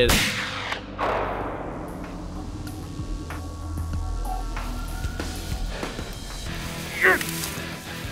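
A muzzleloader shot right at the start, dying away over about a second: the follow-up shot into an already wounded whitetail buck. Faint background music follows, with a short, loud call about seven seconds in.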